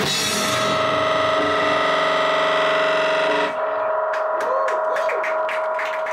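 A live rock band's closing chord, held out through distortion and echo effects once the drums stop. About three and a half seconds in, the upper part cuts off, leaving a steady held tone with a few short swooping pitch glides and scattered clicks.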